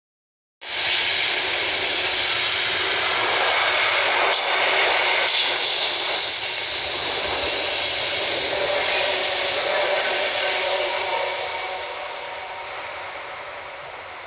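An ÖBB Nightjet sleeper train's coaches passing through the station without stopping: a loud, steady rush of wheels on the rails and air. The noise fades over the last few seconds as the end of the train moves away.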